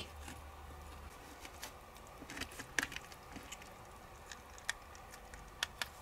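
Faint, scattered small clicks and soft taps of fingers and a knife working the peel off a juicy navel orange, the sharpest a little before halfway and twice near the end.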